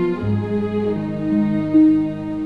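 Theatre orchestra playing slow music on bowed strings in long, sustained notes, with a low bass note coming in just after the start and a higher note swelling near the end.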